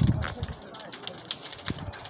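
Irregular sharp cracks and pops, several in under two seconds, typical of a burning wooden house heard from a distance.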